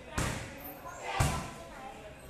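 Two strikes landing on Muay Thai pads, about a second apart, each a heavy smack with a short echo from a large hall.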